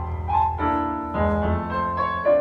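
Piano playing a slow ballad introduction, with a new chord or note group struck about every half second, each ringing on and fading.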